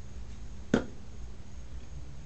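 A single sharp click or snap about three quarters of a second in, over a low steady hum.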